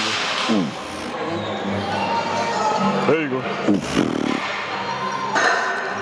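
A man's short, falling vocal groans of effort during a set on a leg extension machine, heard three or four times, over steady background music, with a sharp knock right at the start.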